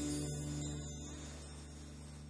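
The final chord of an acoustic song ringing out and fading away, with guitar and low held notes dying off slowly.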